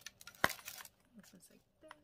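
A metal snap button on a patent calfskin wallet's strap popping open with one sharp click about half a second in, followed by a few soft clicks and leather rustle as the flap is lifted.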